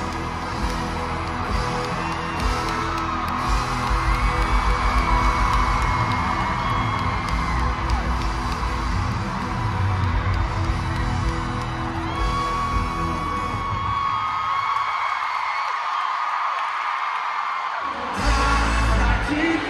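Live pop band playing through an arena PA, with a large crowd screaming and whooping over it. The bass and drums drop out about four seconds before the end, leaving mostly the crowd's screaming and a few held high notes.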